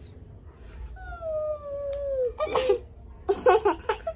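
A small child's long, drawn-out vocal note, sliding slowly down in pitch for over a second, followed by short bursts of giggling laughter near the end.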